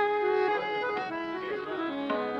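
Harmonium accompaniment playing a short stepwise phrase in raga Malkauns, several notes sounding together, just after the singer's long rising note.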